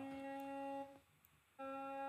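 A steady pitched tone near middle C, held for about a second, then sounded again after a short gap: the selected vocal note being auditioned as its pitch is dragged in Logic Pro's Flex Pitch editor.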